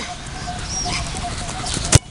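A soccer ball struck hard by a kick near the end: a single sharp thud. Before it there is faint outdoor background with a short high bird-like chirp.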